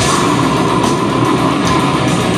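Live heavy metal band playing loud and dense: distorted electric guitars and bass over rapid drumming.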